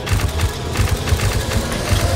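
Logo-intro sound effects: a deep rumble with a dense run of rapid clicks over it.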